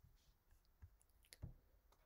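Near silence with a few faint, short clicks: the taps of a stylus on a writing tablet.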